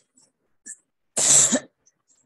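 A person coughing once, a single short burst a little over a second in, with near silence around it.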